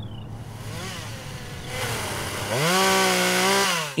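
A small engine idling, then revving up about two and a half seconds in, holding high for about a second and a half, and dropping back near the end.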